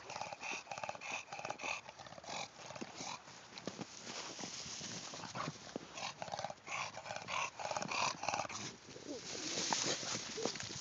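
English bulldog growling in runs of short, rapidly repeated bursts while pushing a bowling ball around in the snow. A burst of rushing, scuffing noise comes near the end.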